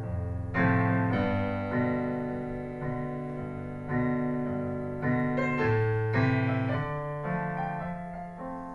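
Yamaha digital piano playing slow chords, each struck and left to fade, about one a second.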